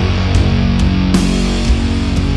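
Doom metal band playing: heavy distorted electric guitars over slow, steady drums, with cymbal and snare hits cutting through a few times.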